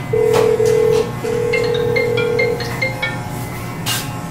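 A smartphone ringing with a marimba-style ringtone, a repeating melody of short bright notes that starts about a second and a half in, after a steady held tone that breaks twice. The phone is ringing because a Google Home Mini's find-my-phone feature is calling it.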